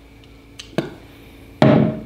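Handling noise from a small plastic spit cup: a light click just before the one-second mark, then a louder knock about a second and a half in.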